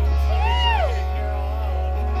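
A steady low hum from the live band's stage amplification, held between songs with a few faint sustained tones over it. About half a second in, a short pitched sound rises and then falls away.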